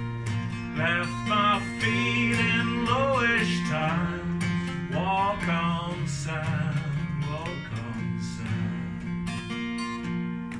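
Steel-string acoustic guitar played in a steady folk-blues pattern with sustained bass notes. Over it, from about a second in, a wordless vocal line rises and falls for several seconds without lyrics.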